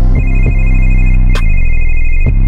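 Music with heavy bass and a telephone ring in it: a fast-warbling two-tone trill comes in just after the start and runs on over the beat, with a drum hit partway through.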